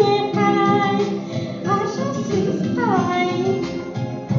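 A song: a singing voice carrying a melody that glides between notes, over musical accompaniment.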